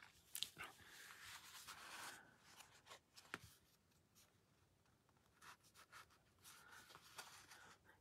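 Near silence, with faint rustles and light taps of cardstock being handled and slid, and one sharper tick about three and a half seconds in.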